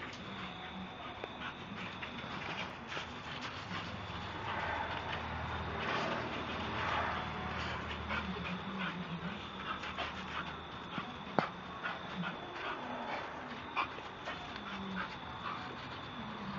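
Bull terrier panting and whimpering as it plays, with many short scuffs and clicks from paws moving on gravel.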